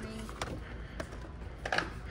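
Plastic blister pack of a diecast model car being handled and slid off a metal store peg: a few faint clicks and crinkles, the strongest near the end, over a steady low background hum.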